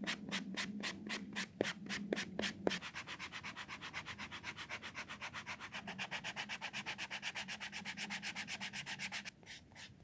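Steel knife blade being sharpened with a handheld abrasive block, rasping back-and-forth strokes. The strokes are slower and uneven at first with a few short pings, then become quick and even at about five or six a second, and stop about nine seconds in.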